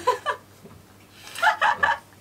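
A woman laughing: a short burst at the start, then a quick run of about four high-pitched bursts of laughter near the end.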